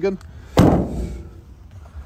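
The rear steel load door of a Peugeot Boxer van slammed shut: one loud bang about half a second in, ringing briefly as it fades.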